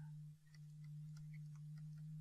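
Faint steady low electrical hum on the recording, with a few faint light ticks.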